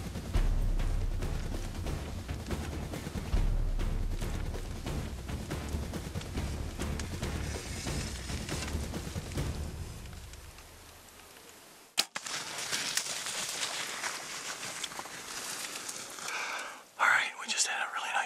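Dramatic background music with a low drum beat, fading out about ten seconds in. About two seconds later comes a single sharp snap of a bow shot, followed by rustling.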